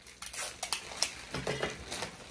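Handling noise: a quick, irregular string of light clicks, taps and rustles as items of the basket are moved and adjusted by hand.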